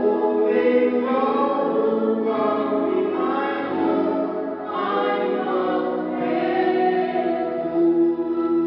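Church choir singing a gospel song, voices holding long chords that change every second or two.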